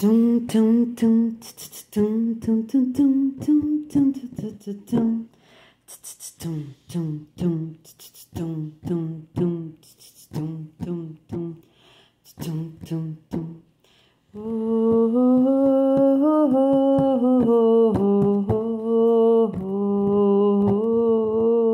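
A voice singing short clipped notes in rhythm, set against sharp percussive hits made without instruments. After about 14 seconds it changes to a long, steady hummed melody.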